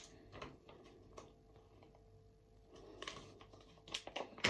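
Near silence: room tone with a faint steady hum and a few soft clicks.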